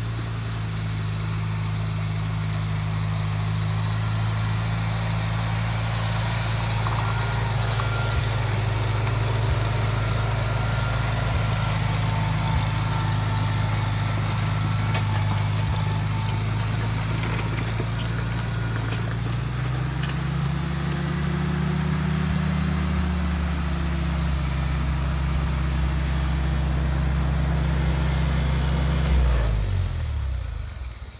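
Farmall Cub tractor's small four-cylinder flathead engine running steadily at a low, even speed. Its note rises and falls briefly about two-thirds of the way through, and the engine is shut off and dies away right at the end.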